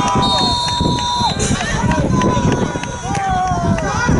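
Spectators at a football ground shouting and calling out, with some long held shouts, over a loud low rumble of crowd and open-air noise as a free kick is struck.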